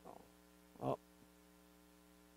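Steady electrical mains hum, a low even buzz of fixed tones, with one short spoken "Oh" just before a second in.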